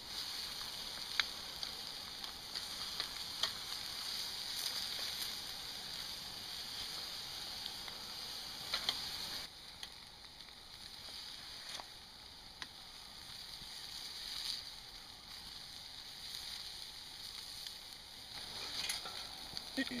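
Pork steaks sizzling on a wire grill grate over a campfire: a steady hiss with scattered sharp pops, a little quieter from about halfway.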